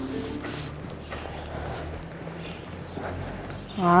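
A young horse's hooves trotting on sand arena footing, with soft, muffled footfalls at an uneven rhythm.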